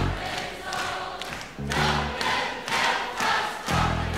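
Irish folk ballad band music with a crowd of voices singing together.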